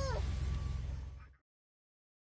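A brief high voice sound that rises and falls in pitch, over a steady low rumble in the car cabin. Both cut off abruptly to silence about a second and a half in.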